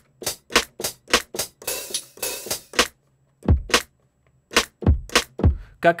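Electronic drum kit sounds triggered from the keys of a small MIDI keyboard: a run of evenly spaced short crisp hits, a longer cymbal wash about two seconds in, a brief gap, then deep kick drum hits alternating with short crisp hits.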